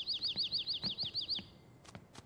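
A small bird twittering in a rapid trill of high chirps, about ten a second, which stops about one and a half seconds in.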